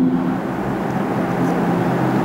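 Steady background noise: an even hiss and rumble with a faint low hum.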